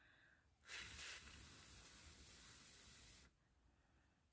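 Near silence, with a faint steady hiss that starts under a second in and cuts off suddenly past the three-second mark.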